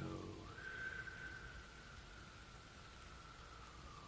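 A slow out-breath whistling faintly through the nose: a thin steady tone that holds for about three seconds and sinks slightly in pitch, over low room noise.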